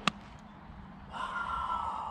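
A golf club striking the ball: one sharp, loud click at the start of the swing's follow-through. About a second later comes a breathy exclamation with a slightly falling pitch, lasting about a second.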